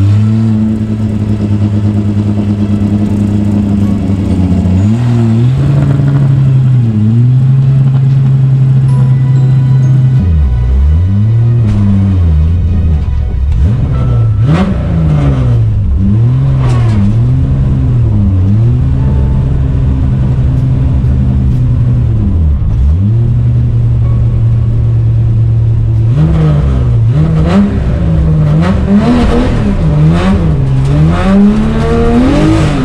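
Ford Sierra XR4i rally car's engine running on its first outing after winter storage: a steady idle at first, then revved up and down again and again as the car moves slowly in low gear, with several quick blips near the end.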